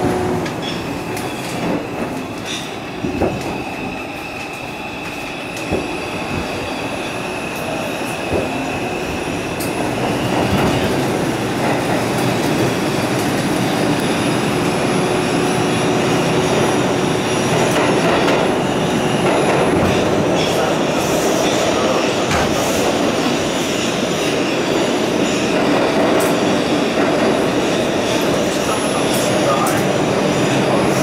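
R142 subway car running through a tunnel, heard from on board: steady wheel and rail rumble with a few sharp clacks over rail joints early on. A high steady wheel squeal runs for the first third, then the running noise grows louder from about ten seconds in.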